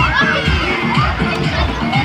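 Many children shouting at once, their high voices overlapping and rising and falling throughout.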